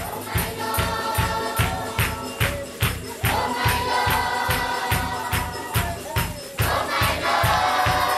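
Group of voices singing together over a quick, steady drum beat with jingling percussion like a tambourine. The singing swells about three seconds in and again near the end.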